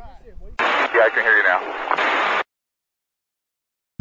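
A person's voice, muffled and noisy, heard for about two seconds before cutting off suddenly into dead silence.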